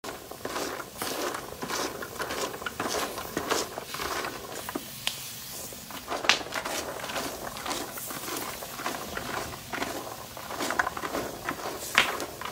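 Cashew nuts in their shells roasting in a wide pan over an open wood fire, crackling and popping steadily as the shells burn, with one sharper pop about six seconds in.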